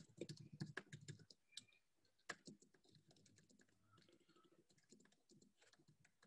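Faint typing on a computer keyboard: a quick run of key clicks over the first couple of seconds, then almost silent.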